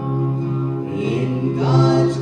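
A woman and a man singing a gospel song into microphones over instrumental accompaniment, holding long notes.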